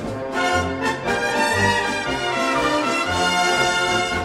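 Czech brass band (dechovka) playing the instrumental opening of a polka-style song: a brass melody over low bass notes sounding on the beat.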